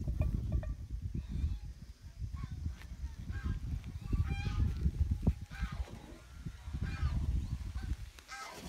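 Wind rumbling and buffeting on the microphone, with a few short pitched calls from an animal in the middle and near the end.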